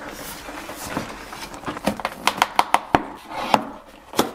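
Cardboard LEGO set box being handled and opened. It rubs and slides at first, then gives a quick run of sharp snaps and taps as it is turned over and its end flap is torn open.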